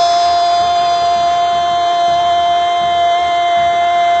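A radio station's goal jingle: one loud, steady held musical note with overtones, unchanging in pitch.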